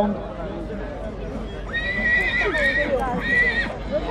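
A horse whinnying loudly, a high-pitched call that starts a little under two seconds in and breaks into a shorter second part about a second later, with crowd talk underneath.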